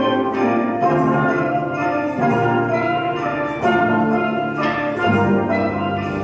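Student steel pan ensemble playing a tune in several parts, many struck pan notes ringing over a steady rhythm.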